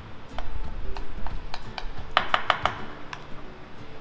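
Metal spoon clinking and tapping against a small glass bowl while scooping out flour-and-water paste: scattered light clicks, with a quick run of four or five a little past halfway.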